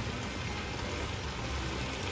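A sauce simmering in a frying pan as it is stirred with a silicone spatula: a steady low hum with a faint hiss over it.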